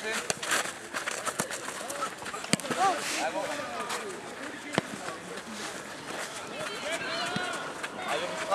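Distant calls and shouts of children and adults at a youth football match, with a couple of sharp knocks in the middle.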